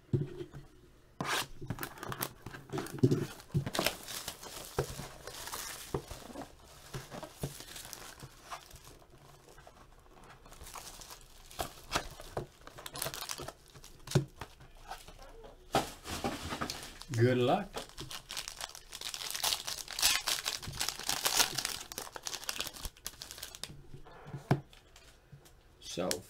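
A sealed Panini Playbook football card box being torn open by hand, its plastic wrapping and cardboard tearing and crinkling in irregular bursts with scattered clicks. The longest, loudest run of crinkling comes about two-thirds of the way through.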